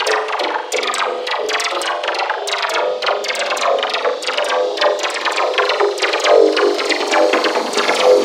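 Electro music in a DJ mix, with rapid drum hits and a mid-range synth riff, the bass filtered out. The filter eases lower near the end, letting in a little more low end.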